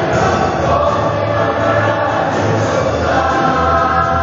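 A mixed choir of men and women singing a gospel song with band accompaniment, steady and loud throughout.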